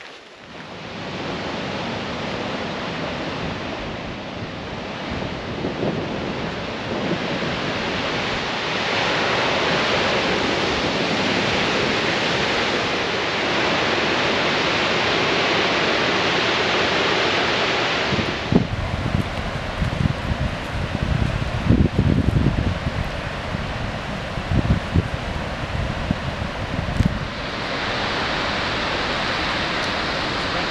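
Steady rush of a large waterfall, Kakwa Falls, building over the first few seconds. From about two-thirds of the way in, wind buffets the microphone with low irregular thumps for several seconds.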